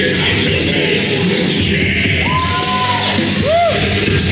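Loud music with a heavy low end, with a held note a little past halfway and a short swooping note near the end.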